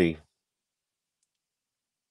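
The last syllable of a man's word cuts off abruptly, followed by dead silence, as if the audio is gated to nothing between phrases.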